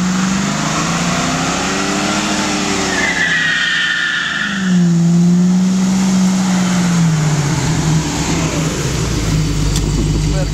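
1989 Ford Mustang LX's 5.0-litre V8 revving hard through a burnout, its pitch rising and falling twice as the rear tyres spin and smoke. A tyre squeal sounds for about a second and a half midway. The engine drops to a lower rumble near the end.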